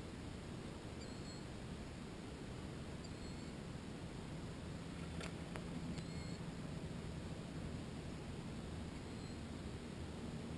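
A small bird's short, high, wavering chirp, repeated about every two seconds, faint over a steady low outdoor background noise.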